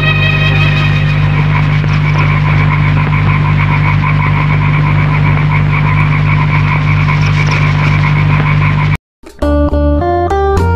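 Old film soundtrack: the last held chord of the song dies away into a steady low hum under a fast pulsing trill. After a sudden cut about nine seconds in, outro music with guitar and organ notes begins.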